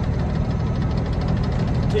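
Truck engine running, heard from inside the cab as a steady low rumble.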